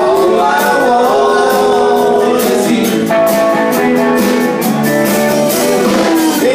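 A live rock band playing: a male singer over electric and acoustic guitars and a drum kit, with cymbal hits keeping a steady beat.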